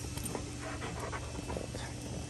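A dog panting in short, irregular breaths.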